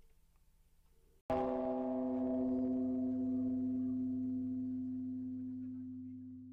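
A single struck, bell-like tone comes in suddenly about a second in: a low note with several higher overtones that rings on steadily and slowly fades near the end.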